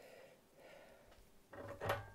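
Faint handling of small wires and parts at a workbench, then a short clatter near the end as the soldering iron is lifted out of its metal stand.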